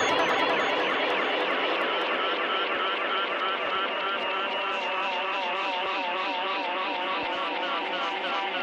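Dark psytrance breakdown: the kick drum and bassline drop out, leaving dense, warbling synth textures with wavering pitch and scattered clicks, slowly sinking in level.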